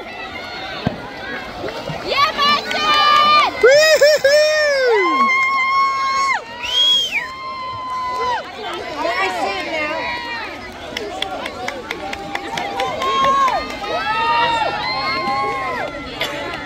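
Crowd of children shouting and cheering, many high-pitched voices overlapping with long drawn-out calls, loudest about four seconds in.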